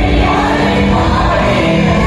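Youth choir singing a devotional song together into microphones, the voices amplified and steady throughout.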